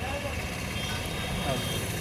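Roadside street background: a steady low engine rumble of traffic with faint voices.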